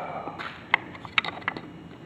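A few light, sharp plastic clicks and taps, spaced irregularly, as the chlorine meter and its vial and case are handled.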